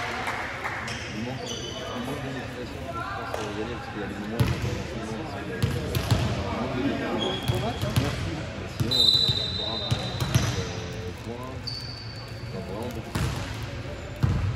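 Players' voices and calls echoing in a large gymnasium, with a volleyball bouncing several times on the hard court floor and a few short high squeaks.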